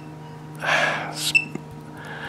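A breath, like a quick gasp, about half a second in. Then comes a single short electronic click-beep from the Celluon laser projection keyboard registering a keystroke, over a faint steady hum.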